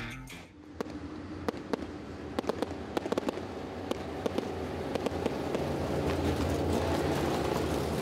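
Dirt late model race cars' V8 engines running at low speed with many sharp exhaust pops and crackles, the engine rumble building steadily toward the end.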